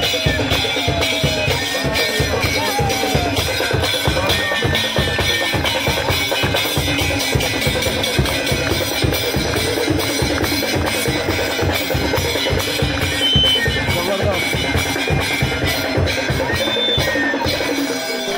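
Fast, steady drumming with sharp strokes repeating several times a second, and crowd voices mixed in.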